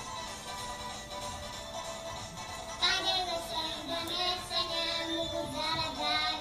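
Backing music playing, and about three seconds in a small boy starts singing over it into a microphone.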